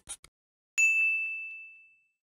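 A single bright ding sound effect about a second in, one clear high tone that rings out and fades over about a second. Just before it, the last few scratches of a pen-writing sound effect.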